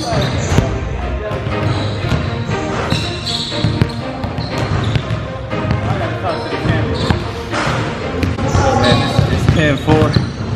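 A basketball dribbled on a hardwood gym floor: a run of repeated bounces, heard over background music and voices in the gym.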